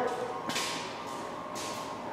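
Faint room noise: a low steady hiss with soft rustling and a faint thin hum, and a soft click about half a second in.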